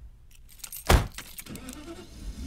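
Scattered clicks and rattles like jangling keys over a low rumble, with one loud thump about a second in.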